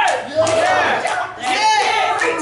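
A woman preaching in a loud, shouting voice, with the congregation calling out around her.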